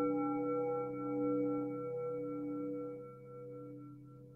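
A struck bell ringing out: several tones hold on together and slowly fade, some of them pulsing gently, dying down near the end.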